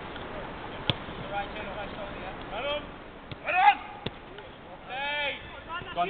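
Footballers shouting to each other during a five-a-side game, with loud calls just past halfway and around five seconds. Two sharp thuds of the ball being kicked, about a second in and again around four seconds.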